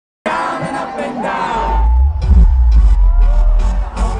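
Live pop concert heard from within the audience: crowd screaming and whooping, then a heavy bass beat from the PA comes in about one and a half seconds in and carries on under the cries.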